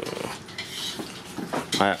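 Metal spoon scraping and tapping on a plate while eating, a few light clicks. A child starts to speak near the end.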